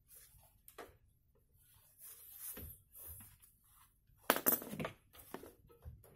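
Metal clinks, knocks and scraping from hands working the top hanging rail of a sliding wardrobe door, with the loudest cluster of knocks about four seconds in.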